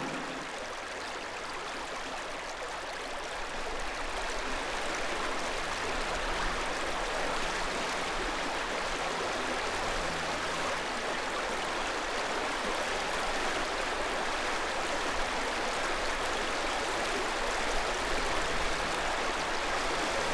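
Steady rush of a shallow creek flowing over rocks.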